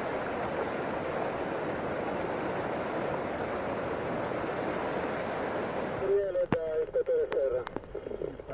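Steady rush of floodwater. About six seconds in it cuts off sharply, giving way to a quieter stretch with a voice and several sharp clicks.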